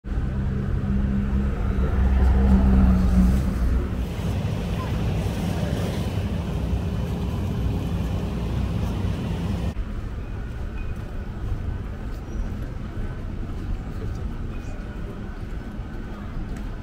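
City street traffic noise, with a vehicle engine running loudest in the first few seconds as it passes close. Near the middle it changes abruptly to a quieter, steadier street hum.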